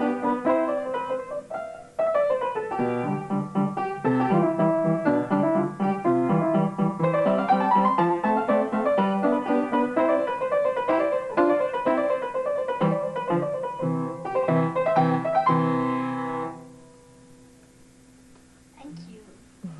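Upright piano played by a child: quick runs of notes with a brief break about two seconds in, ending on a chord near the end that fades away.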